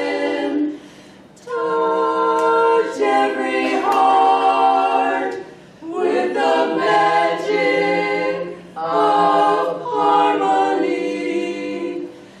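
Women's vocal quartet singing a cappella in harmony: held, sustained chords in several phrases, with short pauses between them.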